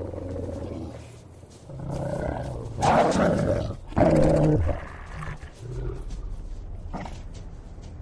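Deep animal growls and snarls, loudest in two outbursts about three and four seconds in, over a low steady rumble.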